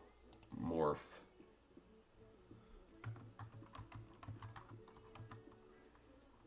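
Typing on a computer keyboard: a quick, irregular run of key clicks starting about three seconds in.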